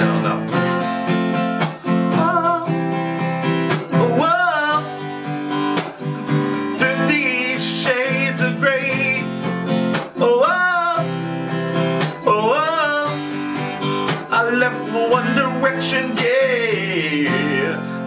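Steel-string acoustic guitar strummed in a down-up-down-up, slap, up-down-up pattern. The slap is a percussive strike of the strumming hand that deadens the strings on the fifth beat. The chord changes every bar.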